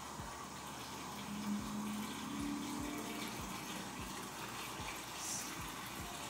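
Refrigerator door water dispenser running into a cup: a steady stream of water, with a faint low hum joining for a couple of seconds near the middle.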